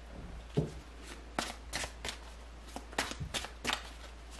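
A deck of tarot cards being shuffled by hand: a run of sharp, irregular card snaps and flicks, a few every second, over a faint low hum.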